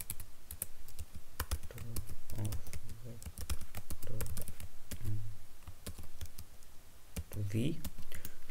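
Computer keyboard being typed on: a stream of quick, irregular keystroke clicks as a line of code is entered.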